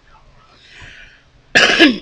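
A woman coughs loudly near the end, two quick bursts close together.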